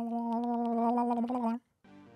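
A man's voice singing one long, steady held "oh" note that cuts off sharply about one and a half seconds in. Faint background music begins just before the end.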